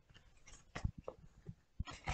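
A few faint, soft taps and light rustles of tarot cards being handled.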